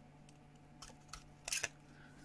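Handheld metal craft punch pliers clicking shut through cardstock about one and a half seconds in, after a couple of faint handling clicks.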